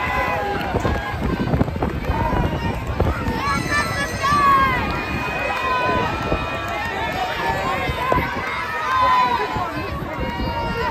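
Crowd of parade spectators talking and calling out, many voices overlapping at once.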